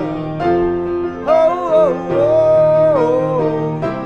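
Live acoustic band music: grand piano chords under a long, wavering melody line that glides up and down, with no words sung.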